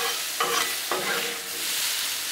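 Sliced bell peppers and onions sizzling on a hot Blackstone steel griddle while two metal spatulas stir them, with a few short scrapes of the spatulas on the griddle top in the first second.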